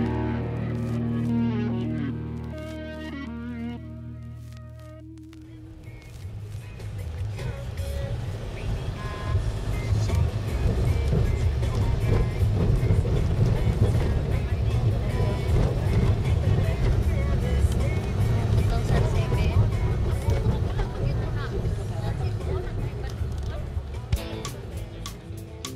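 A music track fading out over the first five seconds, then the live sound inside a Toyota van's cabin on a rough, broken road: a steady low rumble of engine and tyres with frequent small rattles and knocks.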